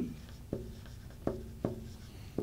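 Marker pen writing on a whiteboard: faint strokes with three short ticks as the tip touches down.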